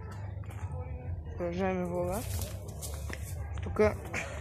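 A man's voice holding one drawn-out vowel for under a second, falling in pitch at its end, over a steady low rumble. A short stretch of hiss follows, then a brief spoken syllable near the end.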